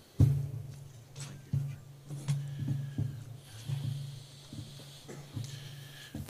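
Knocks and rustling picked up by a standing microphone as one speaker steps away from it and another steps up, with a loud thump just after the start and smaller knocks after it, over a steady low hum from the sound system.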